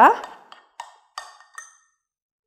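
A spoon clinking against a small glass bowl as pesto is stirred: four light taps, each with a brief ring.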